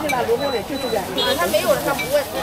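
Several people talking at once in the background, indistinct chatter, over a faint hiss of frying oil.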